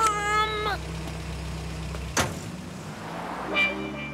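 Car sound effects: a short pitched toot at the very start, then a car engine's low, steady running hum that cuts off with a sharp click about two seconds in.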